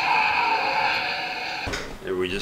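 Soundtrack of a horror film playing from a projection setup, heard in the room: a sustained, steady sound that cuts off abruptly with a low thump near the end.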